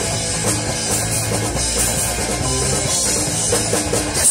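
Punk rock band playing: electric guitars and a drum kit pounding out a steady, loud, fast rock groove.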